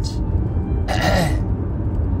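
A man clearing his throat once, a short rough burst about a second in, over a steady low rumble.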